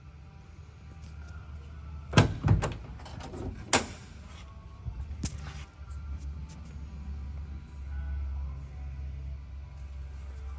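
Several sharp knocks and clunks from the steel cab door of a 1966 Chevrolet C10 pickup as the cab is exited, bunched about two seconds in and again near four seconds, with a few lighter clicks after. Faint music plays in the background.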